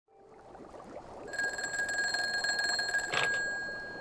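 A desk telephone's bell rings for about two seconds and stops with a click, as the receiver is picked up. Underneath is the steady bubbling of hot tub water.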